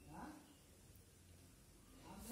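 Near silence: room tone, with a brief faint sound in the first half-second.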